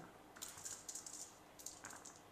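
Small plastic dice thrown by hand, clicking lightly against each other and the table mat as they tumble and settle, in two brief bursts of faint ticks, one about half a second in and one near the end.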